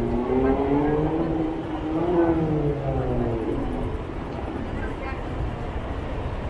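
City street traffic, with a pitched drone that rises slowly for about two seconds and then falls away over a steady low rumble.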